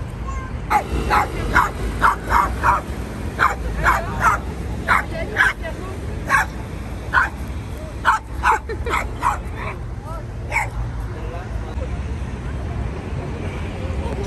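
A small dog barking in a rapid run of short, sharp yaps, about eighteen of them, that stops about three-quarters of the way through.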